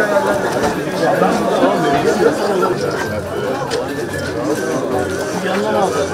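Many people talking at once: overlapping crowd chatter with no single voice standing out.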